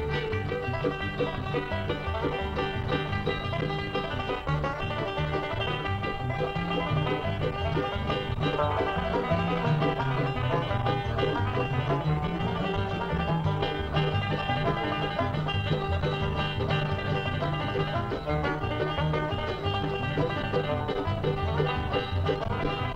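Live bluegrass instrumental on five-string banjo, acoustic guitar and mandolin, played at a steady, driving tempo with a moving guitar bass line underneath.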